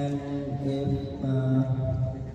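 A man's voice over a public-address system in a large, echoing hall, drawn out into long level syllables like hesitation sounds between words.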